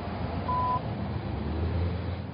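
Low, steady rumble of stopped motor vehicles with their engines running, swelling in the second half. A single short beep sounds about half a second in.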